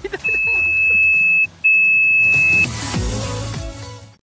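Barryvox S avalanche transceiver in search mode sounding two long, steady high-pitched beeps of about a second each: the close-range signal as the searcher nears the buried transmitter. A noisy stretch with music follows and fades near the end.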